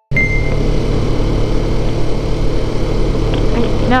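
Motorcycle engine running with a steady low hum under a rushing noise, cutting in abruptly.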